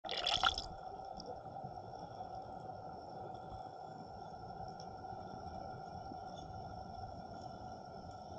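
Underwater sound picked up by an action camera in a waterproof housing: a brief rush of noise in the first half-second, then a muffled, steady low water rumble with faint steady high-pitched tones held throughout.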